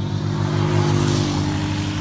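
Motor vehicles passing close by on a highway: steady engine hum with tyre and wind noise, swelling about a second in.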